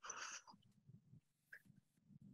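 Near silence: a short breath near the start, then only a faint low hum.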